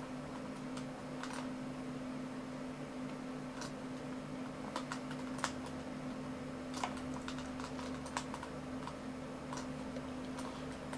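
Faint, irregular clicks of a computer mouse, about seven in all and the loudest about five and a half seconds in, as chess pieces are moved on screen, over a steady low hum.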